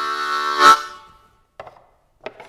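Harmonica playing a held chord that swells to a sharp accented note and dies away about a second in. A short light click follows near the end.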